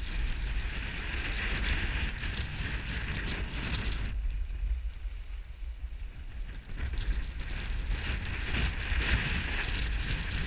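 Strong wind buffeting the microphone, a constant deep rumble. Over it comes the hiss and scrape of skis running on wind-packed snow, which swells for the first few seconds and again near the end.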